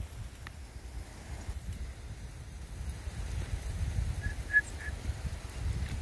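Wind buffeting the microphone, a low uneven rumble that grows louder toward the middle, with three faint short high notes about four and a half seconds in.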